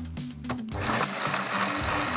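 Electric food processor starting up about two-thirds of a second in and running steadily, its blade chopping chili, kaffir lime, shallots, garlic and lemongrass into a paste. Background music with a steady bass line plays under it.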